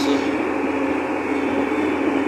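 Tractor engine running steadily under way, a constant droning hum heard from inside the cab.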